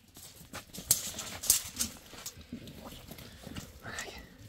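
Irregular scuffs and knocks as a sheep is held and handled, its hooves shuffling on the packed-earth floor of the pen.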